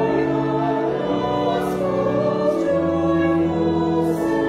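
A hymn sung by voices over sustained accompaniment, long held notes moving to a new chord every second or two.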